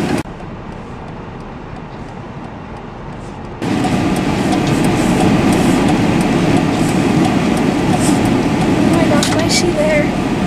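Steady engine and road noise heard from inside a car's cabin as it rolls slowly under light throttle. Quieter for the first three and a half seconds, then abruptly louder.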